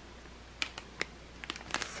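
Plastic bags of flat-back rhinestones being handled, with about half a dozen short, sharp clicks and crinkles as the stones shift inside the bags, more of them near the end.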